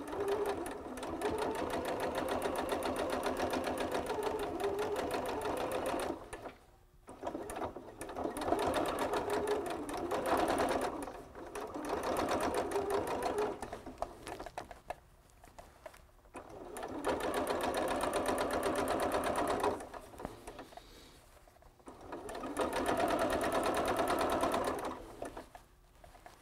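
Household electric sewing machine edge-stitching the folded hem of stretchy knit pants, its needle running in a fast, even rhythm. It sews in five runs of a few seconds each, stopping briefly between them.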